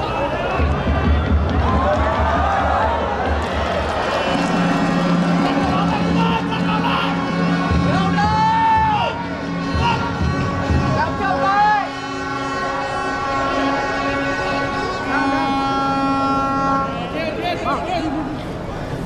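Football stadium crowd sound with supporters' music: a drum beating for the first few seconds, then held notes with a few rising-and-falling sweeps over general crowd noise.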